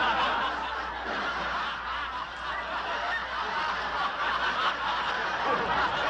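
Audience laughing without a break, a dense crowd laughter at a fairly steady level.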